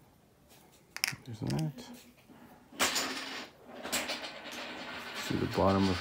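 Handling noises from trimming plastic miniature parts with a hobby knife: a sharp click about a second in, then stretches of scratchy scraping, with a brief mumbled word early on and a man's voice starting near the end.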